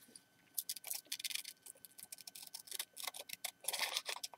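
Scissors snipping through magazine paper in short cuts: a run of quiet, irregular small clicks starting about half a second in.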